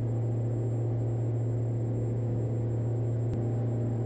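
Diamond DA42-VI's twin Austro AE300 turbo-diesel engines running at takeoff power during the takeoff roll, heard in the cockpit as a steady low drone.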